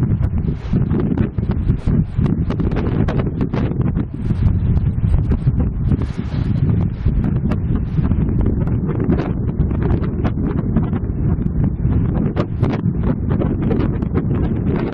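Strong gusty wind buffeting the camera's microphone ahead of an approaching thunderstorm: a loud, steady low rumble broken by many short crackles.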